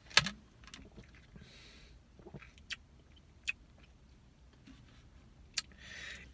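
Small mouth and drinking sounds from a person sipping and tasting a protein shake from a plastic shaker bottle: a handful of short, sharp clicks and lip smacks, the loudest just after the start, with a soft breathy hiss a little before the second mark.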